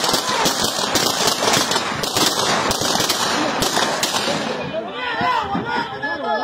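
Rapid gunfire, many shots in quick succession, for about four and a half seconds, then shouting voices near the end.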